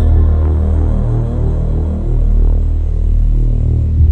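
Background music on the soundtrack: a loud, low droning bass with a throbbing pulse, the higher held notes dropping away.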